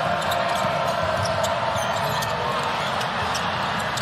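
Arena sound from a basketball game: a steady crowd murmur with a basketball being dribbled on the hardwood court.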